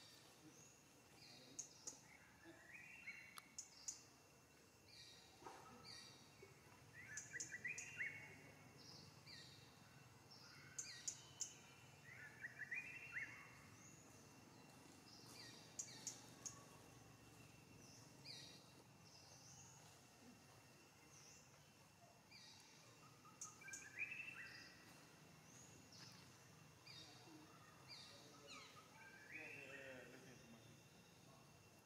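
Faint bird chirps over a quiet background, coming in short clusters every few seconds, with a faint steady high tone underneath.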